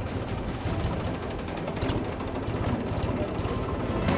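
Mahindra tractor's diesel engine running as it is driven slowly along a dirt road, a steady low rumble.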